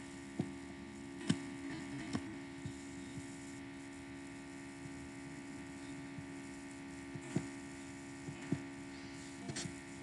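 Steady low electrical mains hum on the recording, with about half a dozen short, sharp computer-mouse clicks scattered through it.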